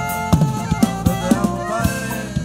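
A live band playing an instrumental passage: a saxophone melody over electric bass and a steady drum beat.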